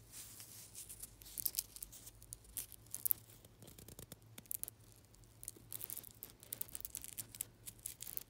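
Fingers handling and rubbing a hook-and-loop (Velcro) watch strap, giving short, irregular scratchy crackles in bursts.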